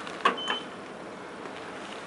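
Elevator car floor button being pressed: two quick clicks near the start with a short high beep between them as the button lights and registers the call, then a steady low background noise.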